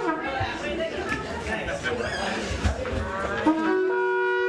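Wavering, broken horn-like blasts mixed with voices, then a short upward slide into a long, steady horn-like note about three and a half seconds in.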